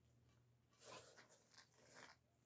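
Near silence, broken by a few faint scrapes and rustles about a second in and again near the end: a person's shoes and clothes scuffing on a concrete ledge as he sits down.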